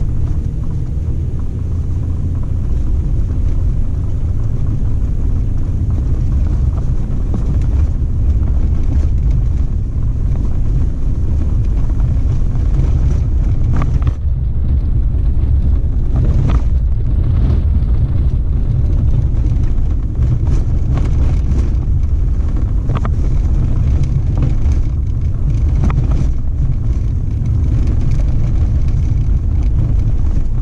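Off-road vehicle driving along a sandy desert dirt track: a steady low rumble of engine, tyres and wind, with short knocks and rattles from the rough track in the second half.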